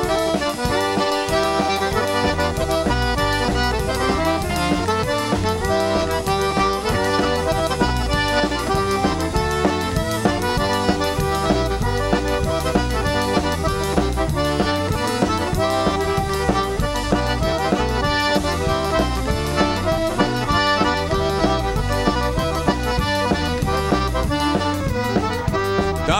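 Live Cajun band playing an instrumental two-step, the Cajun accordion leading the melody with fiddle and a drum kit keeping a steady dance beat.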